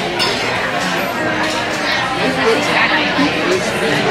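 Busy restaurant dining room: many people talking at once, with dishes and cutlery clinking.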